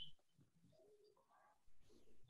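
Near silence on a video-call line: room tone with a brief faint blip at the very start and a faint low murmur around the middle.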